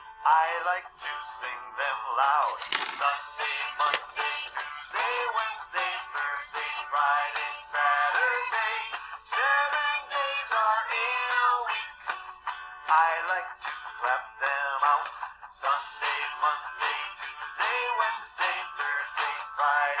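Children's song about the days of the week, a singer naming the days over upbeat backing music.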